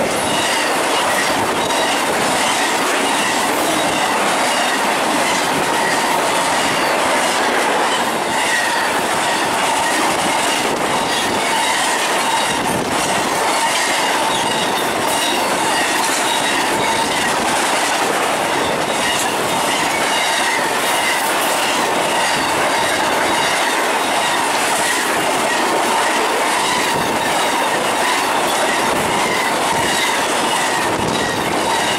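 Freight cars of a fast intermodal train passing close: a steady loud rush of steel wheels on rail, with thin squealing tones and irregular clicks over the rail.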